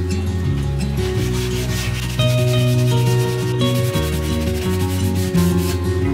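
Glass pane being pushed and slid by hand across a wooden tabletop, a dry rubbing scrape in two stretches with a short break just past halfway, over background guitar music.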